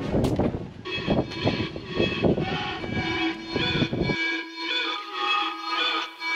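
Background music with sustained chords over rough outdoor noise with knocks and rumble. About four seconds in, the outdoor noise cuts off suddenly and only the music remains.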